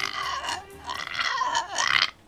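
A man's wordless, wavering whimpering, like mock crying.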